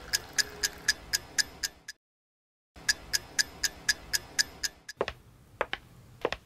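Clock ticking fast and evenly, about four ticks a second, cut off abruptly by a brief dead silence partway through. Near the end the ticking gives way to a few fainter, irregular knocks and clicks.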